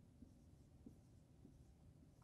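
Near silence: a dry-erase marker writing on a whiteboard, heard as a few faint ticks and strokes over low room rumble.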